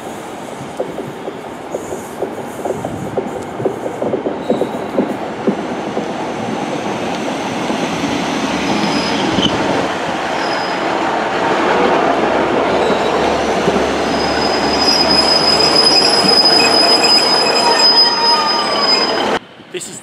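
Transport for Wales Class 150 Sprinter diesel multiple unit running into the platform, its rumble growing louder as it draws alongside. A steady high squeal from the wheels or brakes sets in during the last few seconds as it slows to stop.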